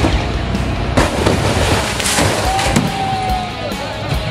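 A refrigerator dropped from about 30 to 40 feet crashes onto the ground about two seconds in, over loud rock music.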